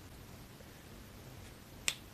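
Low room noise, then a single sharp click near the end.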